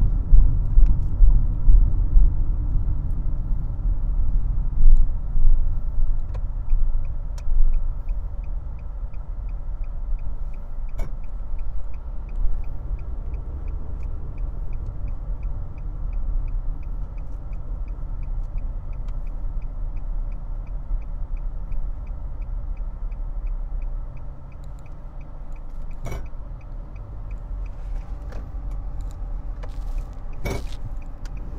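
Road and engine rumble inside a moving Nissan car, uneven and louder for the first several seconds, then steadier. From several seconds in almost to the end, the turn-signal indicator ticks steadily at about two clicks a second.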